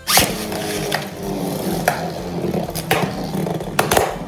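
Two Beyblade Burst spinning tops grinding across a plastic stadium floor, starting abruptly, with sharp clacks about once a second as they strike each other and the stadium wall.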